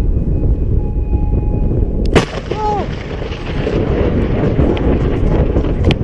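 A close lightning strike: one sharp thunder crack about two seconds in, followed by loud rumbling, over heavy low noise. A short yell comes just after the crack.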